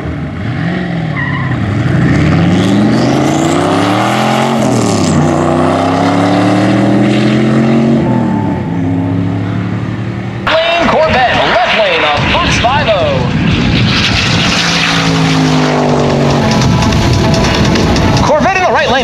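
Two V8 race cars, a single-turbo LS-based C5 Corvette and a Fox-body Mustang 5.0, accelerating hard side by side from a standing start. The engine notes climb in pitch through each gear and drop back at the shifts. About ten seconds in the sound cuts abruptly to a louder, busier stretch of engine noise.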